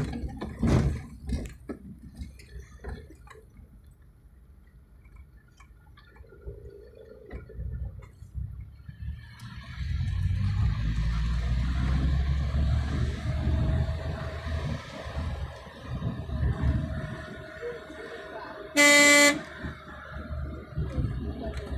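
Driving noise inside a car's cabin, with a few knocks near the start and a steady engine and road rumble that grows louder about halfway through. Near the end a car horn gives one loud honk of about half a second.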